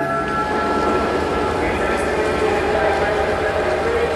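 Theatre sound effect of a train pulling away, a steady rumbling rush that builds over held music tones.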